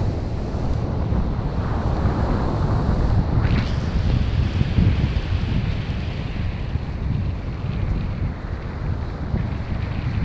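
Sea wind buffeting the microphone in a heavy, uneven rumble, with ocean surf washing in behind it.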